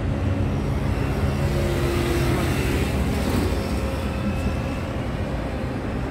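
Steady road-traffic noise: the hum of passing vehicle engines and a continuous rush, a little louder in the first half.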